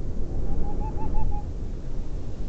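A bird calling a quick run of about seven short, even hoot-like notes over a steady low wind rumble.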